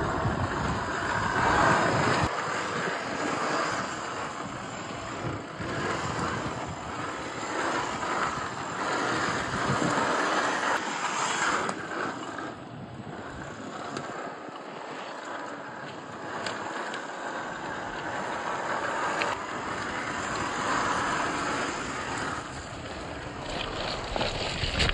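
Electric motor and drivetrain of a Traxxas TRX-4 RC crawler whirring as it crawls over rock, swelling and easing with the throttle. Wind buffets the microphone in the first couple of seconds.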